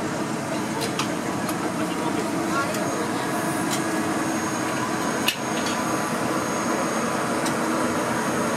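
Steady hum and whir from the Oigawa Railway ED90 rack electric locomotive ED902, with a single sharp click about five seconds in.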